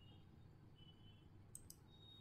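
Near silence: faint room tone, with two faint computer mouse clicks about one and a half seconds in.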